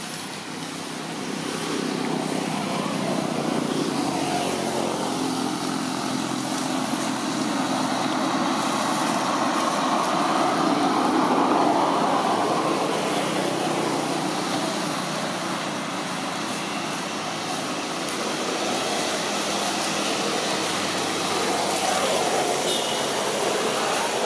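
Road traffic passing, a steady rushing noise that swells and fades, loudest about halfway through.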